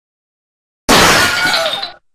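Loud crash of shattering glass, a cartoon sound effect that starts suddenly about a second in and lasts about a second.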